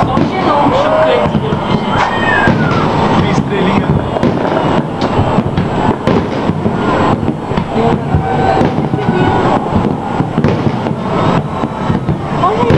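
Aerial firework shells bursting one after another, a dense, continuous run of bangs and crackles.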